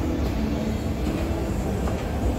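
Escalator running: a steady low mechanical rumble from its moving steps and drive, heard close up while riding it.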